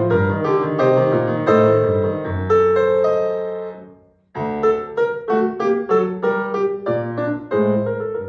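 Solo grand piano playing. A passage ends in a held chord that dies away to a brief silence about four seconds in. Then the playing resumes with a string of separately struck notes, about three a second.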